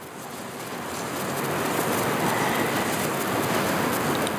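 Steady hiss of rainfall that fades in over the first two seconds and then holds, a storm sound.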